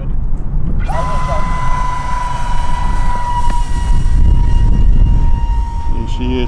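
Electric motor of a 3D-printed RC XB-70 Valkyrie model plane spinning up about a second in, then holding a steady high-pitched whine at launch throttle as the model is hand-launched and climbs away. Wind rumbles on the microphone underneath.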